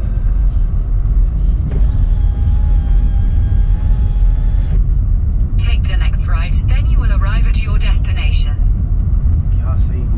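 Steady low rumble of a car's engine and tyres inside the cabin while it drives over a rough, rutted dirt track. About halfway through, a voice speaks for roughly three seconds.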